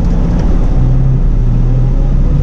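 Semi-truck's diesel engine running steadily, heard from inside the cab as the truck starts to move off slowly, with a low hum that comes in about a second in.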